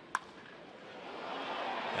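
Crack of a wooden baseball bat hitting a pitched ball hard, one sharp ringing crack just after the start. A ballpark crowd's noise then swells as the ball carries to center field.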